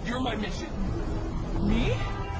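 Dialogue over the steady low rumble of a car in motion, heard from inside the cabin; a short rising question is spoken near the end.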